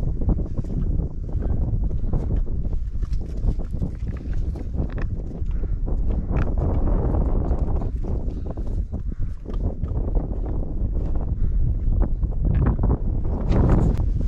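A large flock of sheep milling close together, their hooves shuffling and clicking on the ground in many short, irregular taps, over a steady low rumble.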